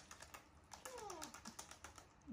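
A baby monkey gives one short, falling whimper about a second in, over a run of soft, quick clicks and taps.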